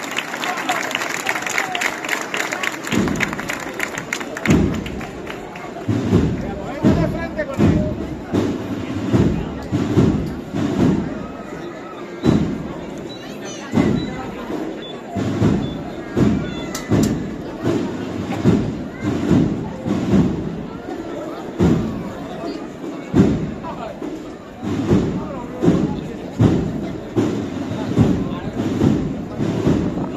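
A procession marching band's bass drum beating a steady, slow pulse, roughly one and a half thumps a second, over crowd murmur. A dense crowd noise fills the first few seconds before the drum beats set in.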